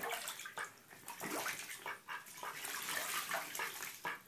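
A Cayuga duck bathing in a bathtub, splashing the water in irregular bursts as it dips and shakes its head.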